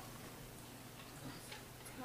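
Quiet room tone with a few faint, light ticks.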